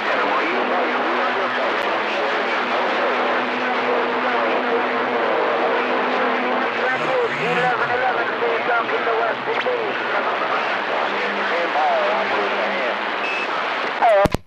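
CB radio receiver's speaker playing a busy channel: steady static with several faint, overlapping distant voices under it, and a steady low hum-like tone through the first half. The noise cuts off abruptly at the very end.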